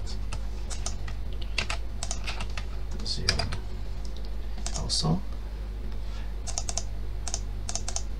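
Computer keyboard typing in irregular clusters of keystrokes, over a steady low hum.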